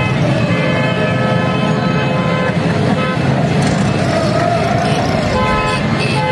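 Car horns honking in celebration in a busy street over traffic rumble and crowd noise. One long steady horn blast fades just after the start, a short one sounds about three seconds in, and another begins near the end.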